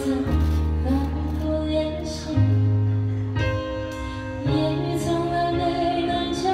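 A live band playing a song with a woman singing over it, drums and bass beneath her, the bass holding long notes that change every second or two.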